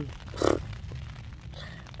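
Rain and wind on a tent heard from inside, a low steady rumble, with a short voice sound from the person about half a second in.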